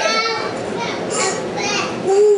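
Young children's voices calling out and chattering over one another.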